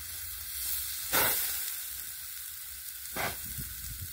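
Zucchini and eggplant slices sizzling on a hot steel plate over a wood fire, a steady hiss with two short, louder bursts, about a second in and again near three seconds.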